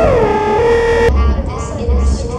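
Psytrance played live from an electronic set: a synth tone slides down in pitch and holds, then cuts off about a second in as deep bass pulses come in.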